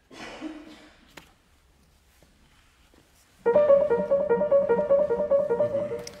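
Grand piano played, starting a little past halfway through: a quick, evenly paced passage of closely repeated notes.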